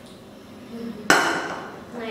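A metal infant-formula tin set down hard: one sharp clank about a second in that rings briefly and fades.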